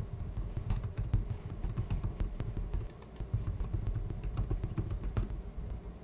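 Keystrokes on a computer keyboard: irregular runs of quick clicks as code is typed.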